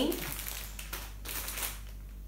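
Plastic food packaging being handled and set down, crinkling in a few short rustles.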